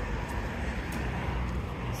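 Outdoor road-traffic background: a steady low rumble and hiss, with a few faint ticks.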